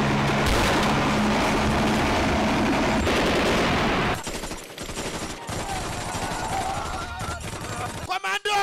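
Film-soundtrack gunfire sound effects: a dense, loud stretch of rapid automatic fire for about four seconds, then lighter, scattered shots.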